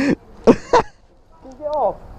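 A man laughing in a few short bursts, followed near the end by a brief voiced sound that falls in pitch.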